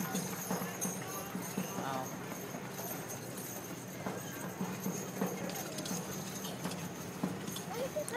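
Faint, irregular clopping of horse hooves, with spectators murmuring.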